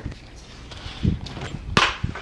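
Handling noise from a clip-on microphone being fiddled with on clothing: low rustling, a dull knock about halfway, and a sharp click near the end.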